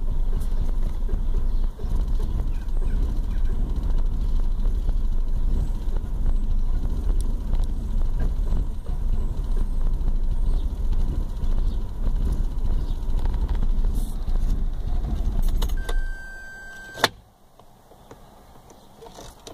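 Vauxhall Corsa C's Z10XE 1.0-litre three-cylinder engine idling steadily, heard from inside the cabin. It is switched off about two seconds before the end, with a short beep and then a sharp click as it stops.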